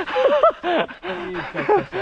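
Men's voices calling out in short exclamations, with no clear words, their pitch sliding up and down.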